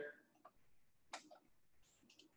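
Near silence with a few faint, sharp clicks of a computer mouse and keyboard, the clearest a little over a second in.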